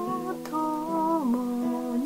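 A song: a voice holds long, wavering notes, sliding down to a lower note a little past halfway, over a plucked-string accompaniment.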